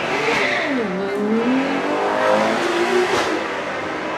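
Ferrari Daytona SP3's naturally aspirated V12 revving as the car drives past. Its pitch climbs, falls back about a second in, climbs steadily again, then drops near the end.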